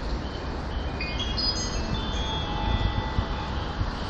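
Electronic station chime on a railway platform: a short run of rising ringing notes about a second in, which hang on briefly, over the platform's steady low rumble.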